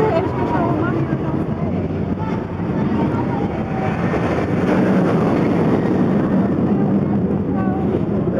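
Wicked Twister's roller coaster train running along its track, a steady rumbling rush that swells in the middle, with a crowd's voices mixed in.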